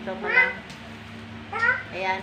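A domestic cat meowing: two short calls, about half a second in and again near the end.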